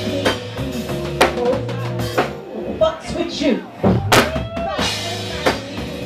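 Female neo-soul singer singing live into a handheld microphone over drums and bass. Past the middle the bass drops out briefly while her voice slides through long runs, then the bass comes back in.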